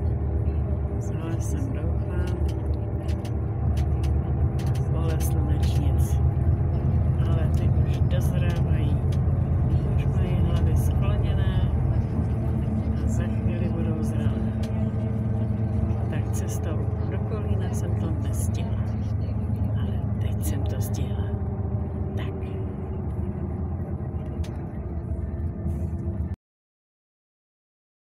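Inside a moving bus: steady low engine and road rumble, with indistinct talking in the background.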